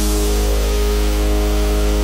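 Dubstep track: a loud, harsh distorted bass section, a dense gritty noise over a heavy sub-bass, held steady with a few sustained tones running under it.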